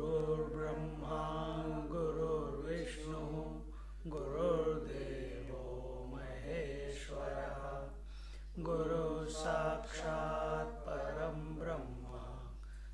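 A man's voice chanting a prayer in long, held notes, pausing for breath about four and about eight and a half seconds in, over a steady low hum.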